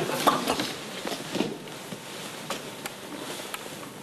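Quiet room tone with a few faint, scattered clicks and taps, a handful over the few seconds.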